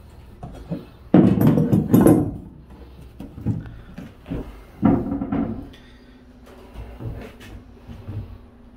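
Knocking and clattering of floor panels being handled and set into place, loudest for about a second early on, with another burst around the middle and a few lighter knocks near the end.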